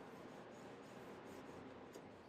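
Faint rubbing of a polishing cloth over a paperback book's cover, stroke by stroke, with a light tick near the end.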